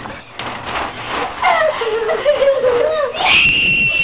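A child's voice: wordless wavering vocalizing, then a high-pitched held scream near the end.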